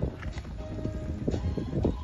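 Hoofbeats of a horse cantering on sand arena footing, a quick run of dull thuds, with music playing in the background.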